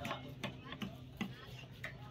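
Large knife chopping through pieces of catla fish onto a wooden log chopping block: a quick, irregular series of six or seven sharp knocks.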